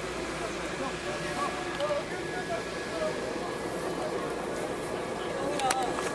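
Crowd hubbub: many faint, distant voices talking over a steady background din, with no single voice standing out.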